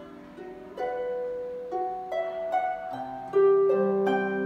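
Concert harp played solo: plucked notes ring on and overlap in a slow melody, soft at first and growing louder near the end.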